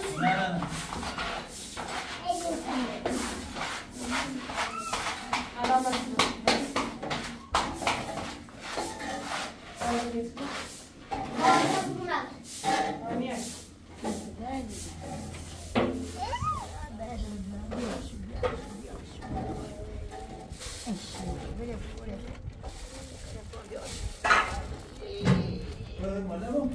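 People talking in a language the recogniser did not transcribe, over frequent short knocks and scrapes, most of them in the first ten seconds.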